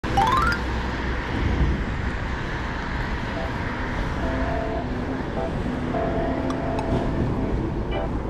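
A short rising sound-effect jingle at the very start, then soft background music with held notes over steady road-traffic noise.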